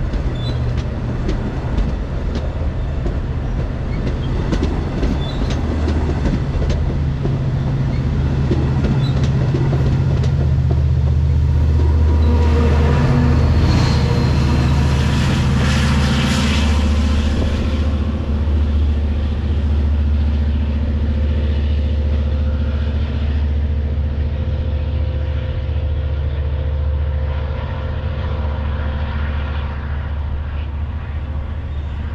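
Long Island Rail Road diesel train passing close by: bilevel coaches roll past with rapid wheel clicks over the rail joints, then the trailing DE30AC diesel-electric locomotive goes by about halfway through, loudest there, its engine drone carrying on as the train pulls away and the high rail noise fades.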